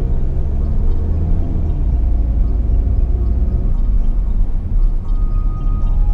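Steady low rumble of a Peugeot 3008's engine and tyres heard inside the cabin while driving, towing a caravan, with faint background music over it.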